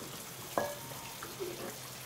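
Faint steady hiss of room noise, with one light clink about half a second in: a utensil striking a stainless steel mixing bowl during stirring.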